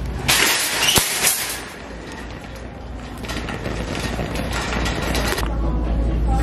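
Metal shopping cart being pulled free of a nested row and rolled, its wire basket clattering and rattling, loudest in the first second and a half. A steady low hum takes over near the end.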